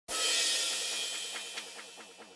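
Opening of a music track: a cymbal crash that dies away slowly, with a few light hi-hat ticks in the second half.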